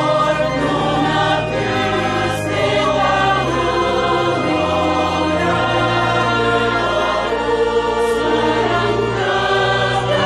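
Background choir music: voices singing long held chords over a low line that moves slowly from note to note.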